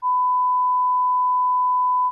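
A censor bleep: one steady, pure beep lasting about two seconds that masks censored speech.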